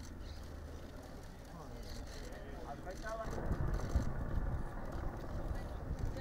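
Outdoor ambience of indistinct voices talking in the background over a low rumble, which grows louder about halfway through.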